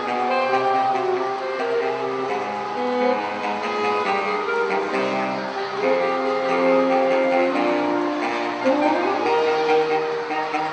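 Saxophone quartet playing live, several saxophones holding sustained notes in harmony that shift every second or so, with a short rising run near the end.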